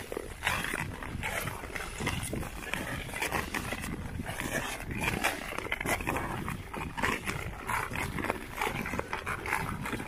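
Ice skate blades scraping and gliding on clear lake ice, with scrapes coming stride after stride about once a second over a constant low rumble.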